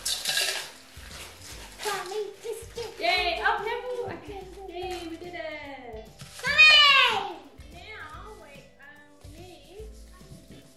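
Crushed biscuit crumbs poured from a plastic zip-lock bag into a stainless steel bowl, a brief rustling rush at the start. Then a child's high wordless calls, the loudest a falling call about two thirds of the way through, over background music.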